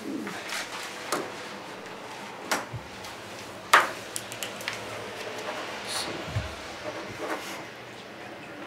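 Paperwork being handled at a table: pages rustled and signed, with a few sharp clicks and taps from pens and papers on the tabletop, the loudest about four seconds in.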